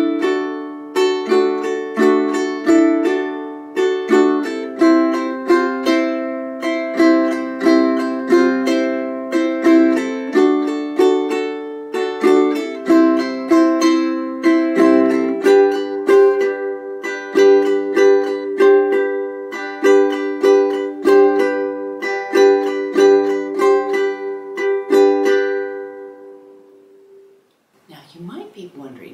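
Ukulele strummed in an island strum pattern at a slow, deliberate pace, moving through D, C and G chords with their sus-chord changes. The last chord rings and fades out near the end.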